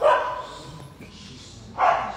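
A dog barking twice, one bark at the start and another near the end, after a run of barks about half a second apart.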